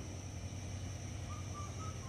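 A bird calls a short run of about four brief whistled notes near the end, over a steady high-pitched insect drone and a low outdoor rumble.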